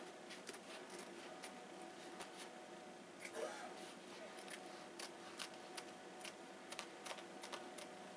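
Scissors cutting through landscaping weed-block fabric: a faint run of quick snips and clicks, coming more often in the second half. A short pitched sound stands out about three and a half seconds in.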